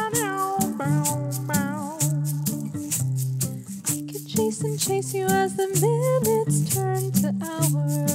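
Music with no words: a steady, crisp percussive beat over held low chords, with a wavering melody line on top.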